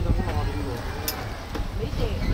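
Passengers' voices talking in the background over the steady low rumble of an open sightseeing cart riding along, with one sharp click about halfway through.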